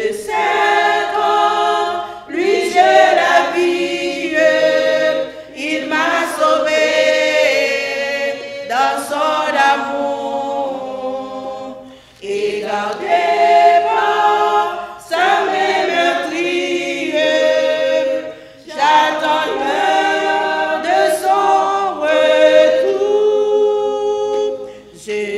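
A woman's voice singing a hymn unaccompanied, in phrases of a few seconds broken by short pauses.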